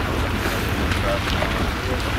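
Wind buffeting the microphone, a steady low rumble, with faint overlapping voices of several people talking in the background.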